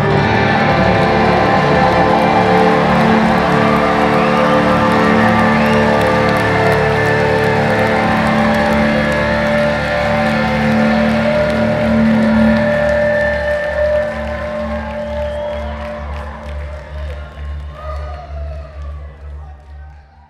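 Live rock band ending a song on a long held chord over a pulsing low note, heard from the audience; the sound dies away over the last several seconds.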